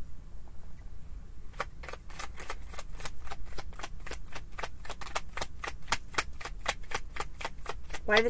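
Tarot deck being shuffled by hand: a quick, even run of card snaps, about four or five a second, starting about a second and a half in.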